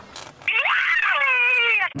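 A single high-pitched, drawn-out cry that rises in pitch and then falls, lasting about a second and a half and cutting off suddenly.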